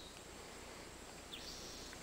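Quiet outdoor background noise with two brief high chirps, one near the start and one about a second and a half in.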